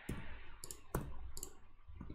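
Computer keyboard keystrokes and mouse clicks: four sharp clicks, roughly half a second apart, as numbers are typed into form fields and an on-screen button is clicked.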